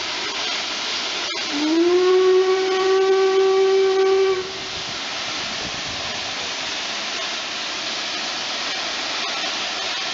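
Steam locomotive hissing steadily, with one blast on its steam whistle about a second and a half in: a deep whistle that rises briefly at the start, then holds steady for about three seconds before cutting off. The whistle is the loudest sound.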